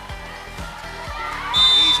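A referee's whistle gives one short, high blast about one and a half seconds in, ending the volleyball rally. Under it runs a steady beat of about three thumps a second from the arena music.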